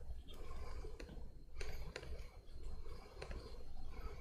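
A few scattered, faint clicks from a laptop keyboard being worked at, over a low steady hum.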